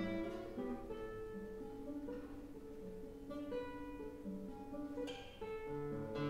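Solo classical guitar played fingerstyle: plucked melody notes ringing over a moving bass line, with a strummed chord about five seconds in.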